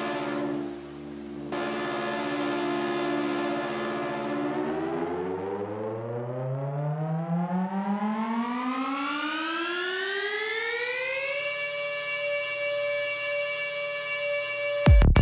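Psytrance breakdown: a held synthesizer chord, then a synth riser that sweeps steadily upward in pitch for about seven seconds and levels off into a sustained high tone, building toward the drop.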